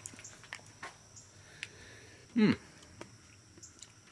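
Soft chewing of a raw cucumber flower: a few faint, scattered mouth clicks, then a short 'hmm' with falling pitch about two and a half seconds in.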